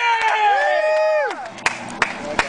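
Several people whooping and cheering together, long falling 'whoo' calls over scattered claps, dying down about a second and a half in.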